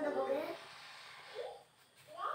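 A man's voice trailing off in the first half second, then quiet room tone with one short faint rising sound.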